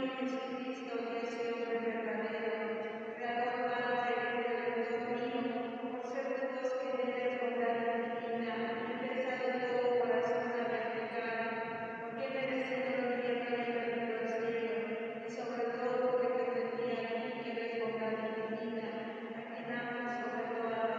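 Voices chanting a slow devotional hymn on long, steady held notes, in phrases that break every few seconds, with a reverberant echo.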